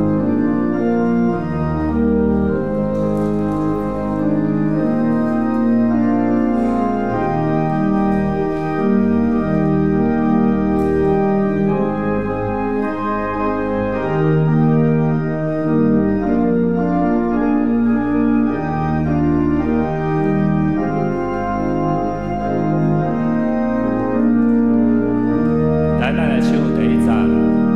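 Organ playing a hymn tune through in sustained chords at a moderate, even tempo, as the introduction before the congregation sings.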